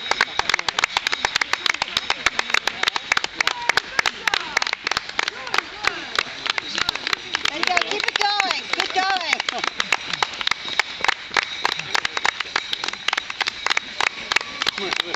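Footsteps of many runners slapping the asphalt as a pack passes close by, a fast, irregular patter of sharp steps. Voices are heard under them, with a short call about eight seconds in.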